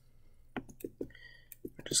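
Irregular sharp clicks of a computer keyboard and mouse being operated, about eight in a couple of seconds, with the last ones near the end.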